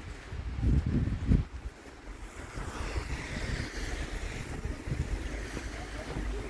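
Wind rumbling on the microphone of a handheld camera outdoors, in irregular gusts that are loudest in the first second and a half, then settling into a steady, quieter hiss.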